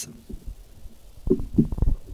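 Handling noise of a handheld microphone being lowered and set down: a cluster of low thumps and rumbles lasting under a second, starting about a second in.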